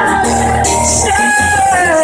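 Live acoustic song: a man's singing voice holding long notes, one sliding down near the end, over a strummed acoustic guitar.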